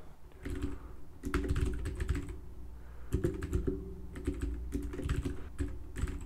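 Computer keyboard typing, in quick runs of keystrokes with short pauses between them.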